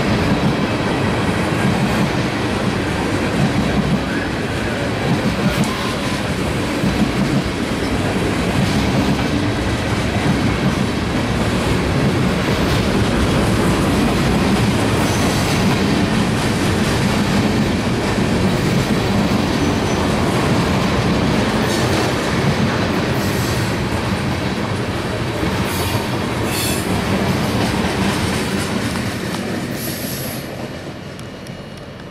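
Freight train cars (tank cars, covered hoppers, boxcars) rolling past close by: a steady, loud rumble of steel wheels on rail with clickety-clack over the rail joints, and a few brief high wheel squeals in the second half.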